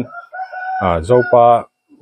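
A rooster crowing faintly in the background, one drawn-out call at the start, followed by a man speaking over the end of it.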